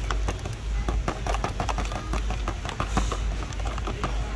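Whole roasted coffee beans rattling in quick, irregular clicks as they are shaken out of the bag into the grinder's clear plastic hopper.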